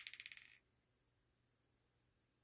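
A metal pet food bowl rattling and wobbling to rest on a concrete floor: a fast run of ringing metallic clicks that stops about half a second in, then near silence.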